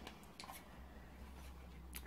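Near silence: quiet room tone with a steady low hum and one faint tap about half a second in.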